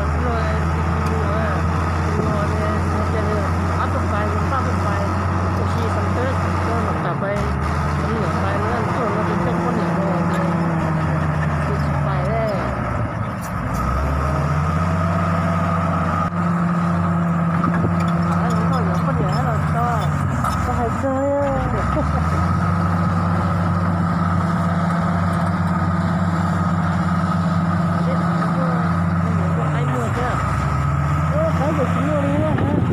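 Komatsu D65 crawler bulldozer's diesel engine working under load as it pushes dirt. The engine note drops and climbs back up about three times, over a steady higher whine.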